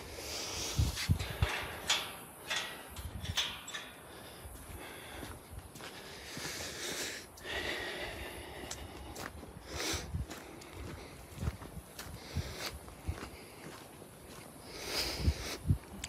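Footsteps on paving and dry grass, with irregular soft knocks and rustles from a handheld phone being carried.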